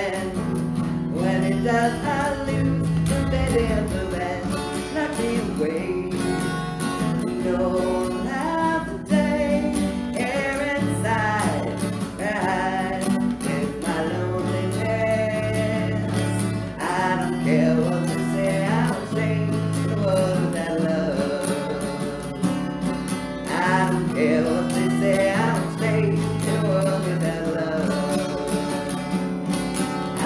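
A woman singing a song while strumming an acoustic guitar, her voice sliding between held notes over steady guitar chords.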